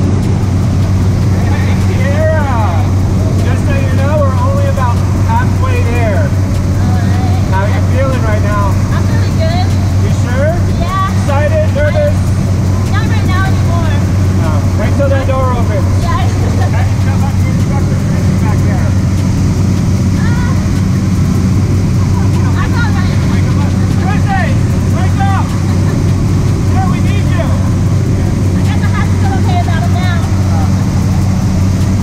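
Steady engine and propeller drone heard inside the cabin of a small jump plane climbing toward jump altitude.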